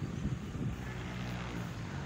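Steady low engine hum from a running vehicle, with wind buffeting the microphone and a few handling knocks near the start.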